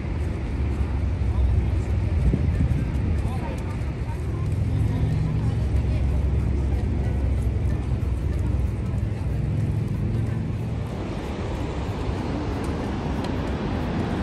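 Steady low outdoor rumble of the falls and traffic, with faint voices of passers-by; a deeper hum swells in the middle and fades again.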